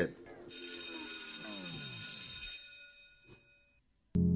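A produced transition sound effect: a bright, bell-like ringing shimmer over tones that sweep downward in pitch. It comes in suddenly about half a second in and fades away by about three seconds in.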